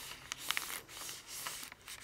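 Faint rustling and soft scraping of a paper pressing sheet as an Oliso Pro iron is pressed and shifted over it, with a few small clicks.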